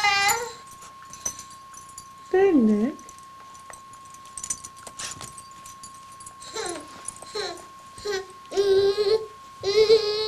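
A baby babbling in short pitched calls: one at the start, a falling call about two and a half seconds in, and a run of calls in the last few seconds.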